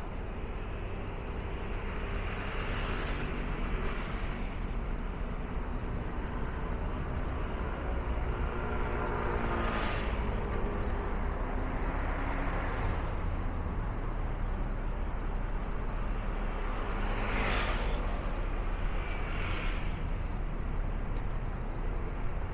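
City road traffic: a steady low rumble with vehicles swishing past every few seconds, the loudest pass about two-thirds of the way in. Just before ten seconds in, one vehicle's engine rises in pitch as it accelerates.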